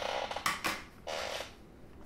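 Paper and cardboard packaging being handled, rustling and scraping in two short bursts about a second apart, with a few small clicks between them.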